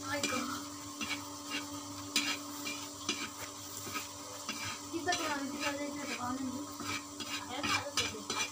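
Food sizzling in hot oil in a pan on a wood-fired clay stove, with irregular scrapes and taps of a spatula stirring against the pan.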